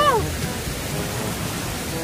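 Wind buffeting the microphone outdoors: an uneven low rumbling noise, with the tail end of a shouted word right at the start.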